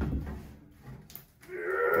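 Sheet-steel door of a gun safe, cut along its sides and top, being bent and peeled open by hand: a low metallic rumble that fades in the first moment, then a few faint creaks. A man's drawn-out "oh" starts near the end.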